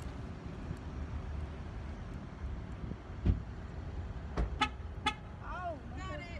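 Steady low traffic and wind rumble with a dull thump about three seconds in, then two short car-horn beeps about half a second apart near the end.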